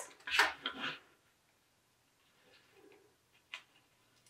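Brief rustle and scrape of accordion-folded paper strips being slid across a table, then near silence broken by a single faint click about three and a half seconds in.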